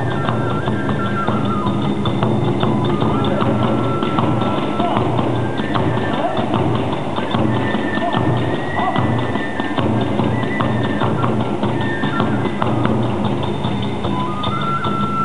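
Kagura hayashi music playing fast for the dance: a dense, driving beat of drums and clashing hand cymbals under a transverse flute holding long notes that step from pitch to pitch.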